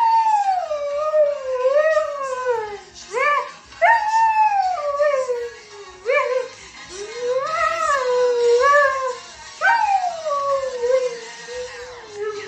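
A husky howling in a run of about six long howls, each jumping up then sliding down in pitch, some wavering up and down as if talking.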